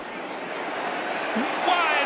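Stadium crowd noise from a live football broadcast, an even roar growing steadily louder as a pass play develops, with a commentator's voice coming in near the end.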